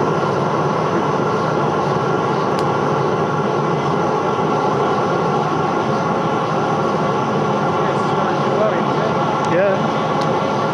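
Homemade blower-fed oil burner running steadily, a continuous rushing noise with a steady motor hum as its flame heats a VCR.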